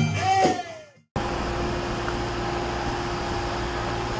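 Folk music with drumming and rattles fades out in the first second. After a brief gap, a steady mechanical drone with a level low hum runs on: an airliner and airport machinery on the apron.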